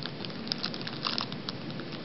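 Clear plastic bag crinkling as hands handle it, with a scatter of small crackles over the first second and a half, then only faint rustling.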